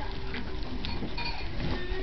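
Faint rustling as newborn Pekingese puppies are handled, with a few brief soft high squeaks.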